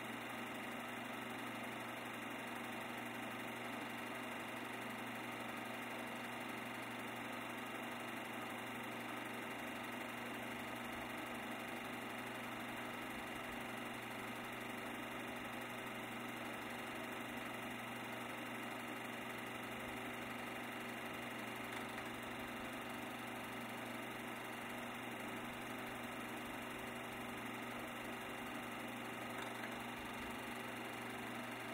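A steady mechanical hum with hiss, holding a few constant tones and never changing.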